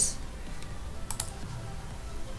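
A few faint clicks from working a computer, two of them close together just past a second in, over a low background hum.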